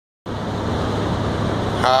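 Steady engine and road noise heard from inside a city bus cabin: a low constant hum under an even rush.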